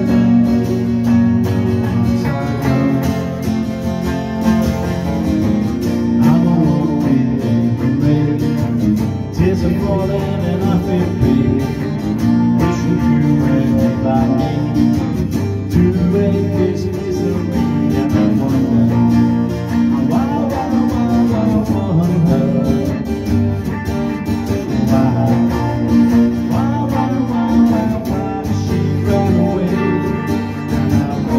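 Electric guitar played through an amplifier in a song with accompaniment, a strong low line running steadily under it.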